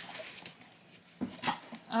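A domestic cat meowing outside.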